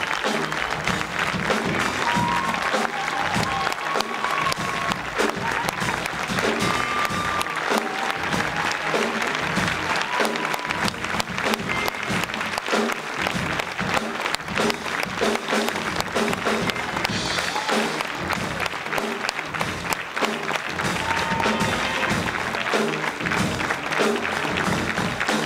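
Audience applauding steadily, with music playing over the clapping.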